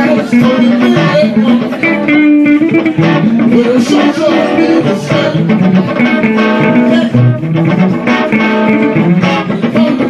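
Two electric guitars playing a slow blues instrumental passage between vocal lines, with a sung "Oh" near the end.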